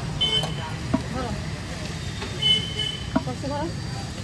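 Busy street ambience: a steady low traffic rumble with background voices, and two short high toots of a vehicle horn, the second one louder. There are a couple of small clicks.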